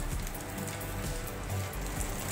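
Background music over a low crackling sizzle from a kadai of tandoori chicken with a hot piece of charcoal set on it.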